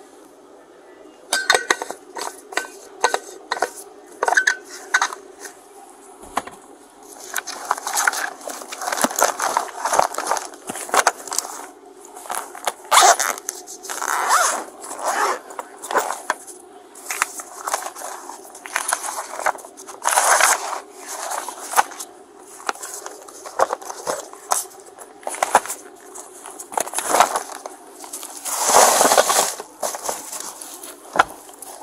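Gloved hands searching a truck cab close to a body-worn camera: a plastic bottle lid and small items clicking and clinking, then papers and plastic bags rustling and crinkling in irregular bursts, over a steady low hum. A longer, louder rustle comes near the end.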